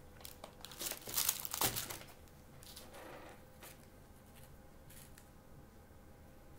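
Thin paper or card crinkling and rustling in the hands: a cluster of short rustles in the first two seconds, then only a few faint ticks.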